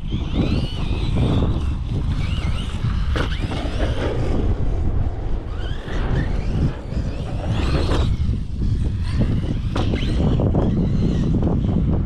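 Large electric RC truck being driven, its motor whining up and down in pitch with repeated bursts of throttle. Heavy wind noise on the microphone runs underneath.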